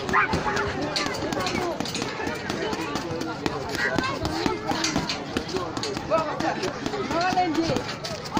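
Boxing gloves hitting a hanging heavy bag in a run of quick punches, with several people's voices talking and calling over them throughout.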